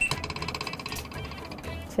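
Thermal receipt printer printing a bill: a rapid pulsing electric whine, strongest for about the first second, then fainter.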